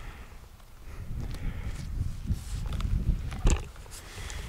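Low, uneven rumble of wind buffeting the microphone, mixed with handling noise as the hand-held camera is swung round, and a single knock about three and a half seconds in.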